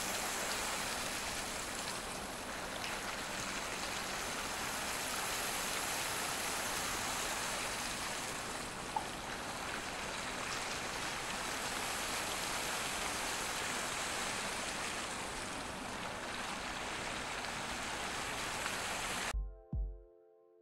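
Whirlpool fountain (the Rain Oculus): water swirling round a large clear bowl and pouring down its centre, a steady rushing sound. It cuts off shortly before the end.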